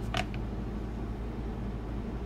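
Steady low background hum, with one brief click near the start as hands handle a metal Blu-ray SteelBook case.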